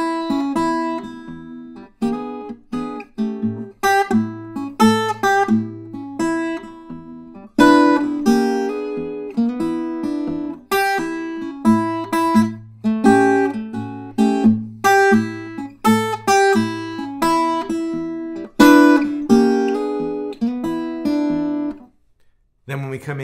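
Fingerstyle blues on an acoustic guitar: short single-note licks answered by chord hits, over a recurring low bass note. The playing stops suddenly near the end.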